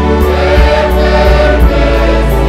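Live gospel worship music: many voices singing together over a band with a steady drum beat.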